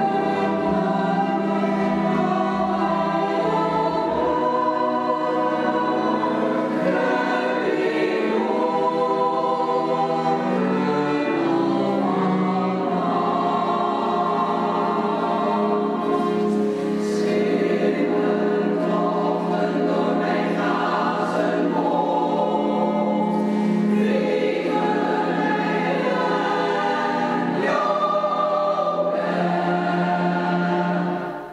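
Women's choir singing a slow, sustained classical piece in several parts, accompanied by cellos and harp, with a low note held underneath.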